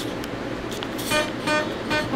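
Acoustic guitar being strummed, with short chords in an even rhythm starting about a second in.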